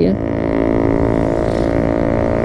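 Motorcycle engine running at a steady speed, a steady, even drone that holds one pitch.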